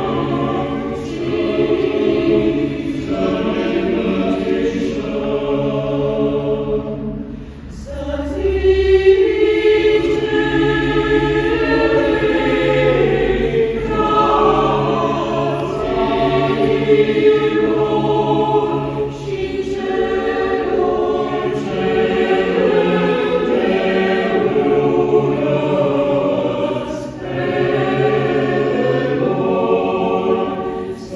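Mixed choir of women's and men's voices singing sustained chords in several parts, with a short break between phrases about seven seconds in.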